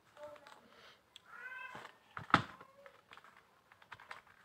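A cat meows once, a short call a little over a second in. Soon after there is a single sharp click, louder than the meow, with faint small ticks around it.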